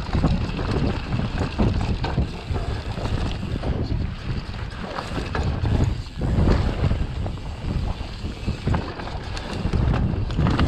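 Mountain bike ridden fast down a dirt singletrack: steady wind buffeting on the camera's microphone over the rumble of the tyres on dirt, with frequent short rattles and knocks from the bike over bumps.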